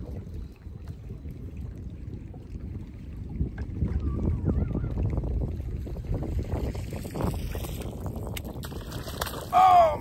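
Steady wind buffeting the microphone over choppy water slapping at a boat hull, a low rumble. Just before the end comes a short, loud voiced exclamation.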